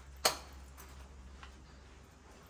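A single sharp click about a quarter second in, followed by two much fainter ticks.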